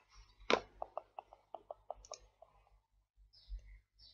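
A run of short, light clicks: one louder click about half a second in, then about ten quick ones at roughly five a second, fading out a little past the two-second mark.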